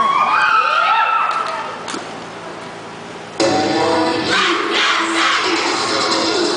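A crowd of young voices cheering and whooping with high, rising and falling shouts, dying down after about two seconds; about three and a half seconds in, loud recorded dance music starts suddenly for the cheer routine.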